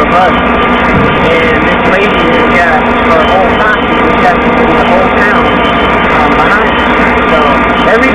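A man talking over a loud, steady mechanical drone that holds several fixed tones.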